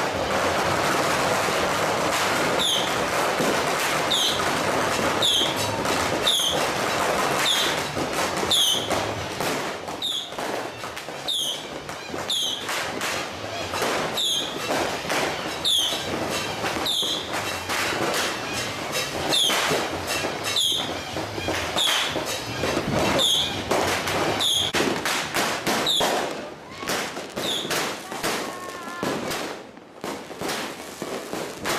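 Fireworks and firecrackers going off close by: a dense fizzing hiss at first, then many sharp cracks and bangs, with short high squeaky chirps recurring about once a second.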